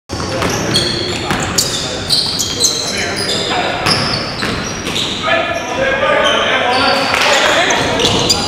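Indoor basketball game on a hardwood gym floor: the ball bouncing, sneakers squeaking in short high chirps, and players' voices calling out, all echoing in the large hall.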